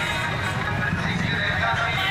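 Many motorcycle engines running together at low speed, a steady low rumble, with the voices of a large crowd shouting over it.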